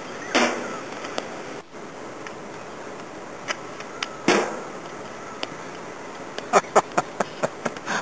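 Hockey stick striking a ball on asphalt: two sharp hits about four seconds apart, each with a short ringing tail, then a quick run of taps near the end.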